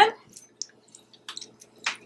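Halved lemon squeezed by hand over a glass bowl: faint scattered wet squishes and drips of juice, with a brief, slightly louder sound near the end.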